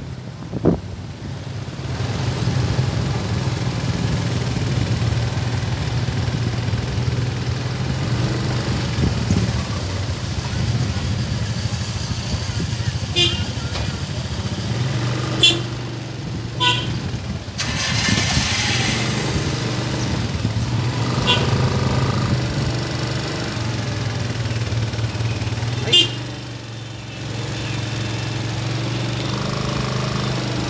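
Cars and motorcycles passing at slow speed in a convoy, their engines making a steady low hum. A few short sharp sounds stand out, the loudest about fifteen seconds in and again at about twenty-six seconds.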